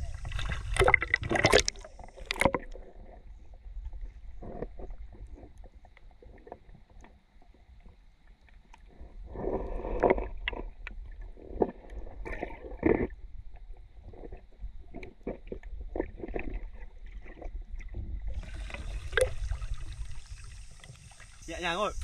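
Water splashing as the camera goes under in the first couple of seconds, then the muffled low rumble of shallow seawater heard from underwater, with scattered clicks and knocks against the housing. Near the end the camera is back in open air with a steady hiss of water.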